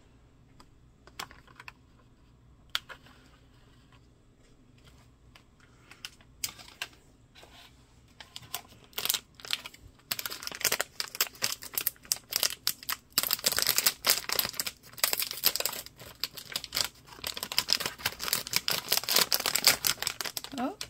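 A few scattered clicks from a clear plastic clamshell being handled. Then, from about halfway, a long run of dense, rapid crinkling from a plastic My Little Pony Squeezelings blind bag being handled.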